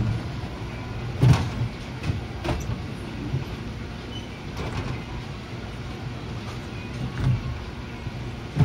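Brunswick A-2 bowling pinsetter running as it sets a fresh rack of ten pins: a steady, quiet mechanical hum broken by a few clunks, the loudest about a second in.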